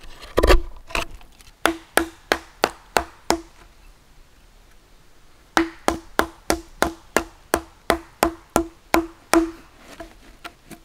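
Wooden mallet striking a chisel driven into a log: sharp wooden knocks at about three a second, each with a short hollow ring. A heavier knock comes about half a second in, then six blows, a pause of about two seconds, and a second run of about a dozen blows.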